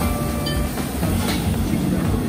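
Steady low rumble of a commercial gas wok burner and kitchen noise as a wok is stir-fried on high heat, with a short metal clatter about a second and a half in.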